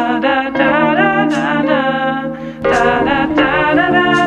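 Background music: a song with a sung vocal line over a held low note. About two and a half seconds in, a fuller bass comes in underneath.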